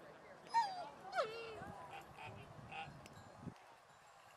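A young German Shepherd Dog whining: two short high cries about half a second apart, each falling sharply in pitch.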